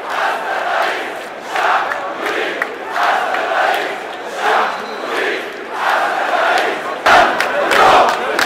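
A large crowd of protesters chanting slogans together, the sound swelling and falling in a steady rhythm about once every second and a half. It gets louder near the end.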